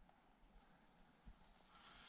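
Near silence, with a few faint footsteps on a rubble floor: one a little over a second in, another near the end.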